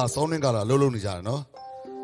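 A man's voice over a stage microphone, speaking with a sing-song, wavering pitch, then a brief pause and a steady held electronic tone near the end.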